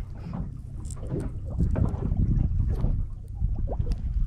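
Wind buffeting the microphone with a steady low rumble aboard a small boat at sea, and a few light clicks from handling.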